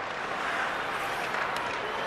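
Ice hockey arena ambience: a steady crowd hum with skates scraping and a couple of sharp clicks of sticks and puck on the ice.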